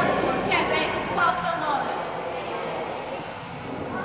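Young people's voices talking in Portuguese for the first second or so, then steady background room noise.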